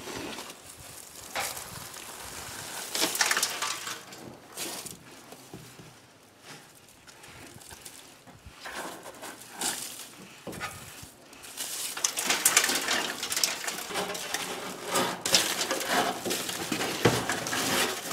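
Dry mouse-nest debris and shed snake skin crackling and rustling as they are pulled out by gloved hand and pushed into a plastic bag, in irregular bursts that get busier and louder in the last third.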